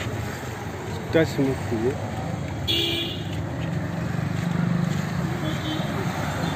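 Roadside traffic noise with a short vehicle horn toot about three seconds in, then the low hum of a vehicle passing on the road.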